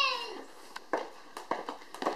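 A young child's short, high-pitched squeal that falls away, followed by a few light taps.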